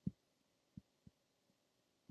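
Near silence, broken by three faint low thumps: one right at the start and two softer ones less than a second later.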